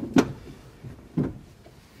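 A sharp knock, then a duller thump about a second later, as a man shifts about and handles fittings inside a metal aircraft cockpit.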